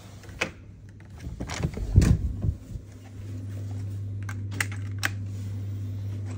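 Sharp clicks and knocks from a hotel key card being handled in its plastic card holder and the room door being worked, loudest about two seconds in. A steady low hum sets in about halfway through.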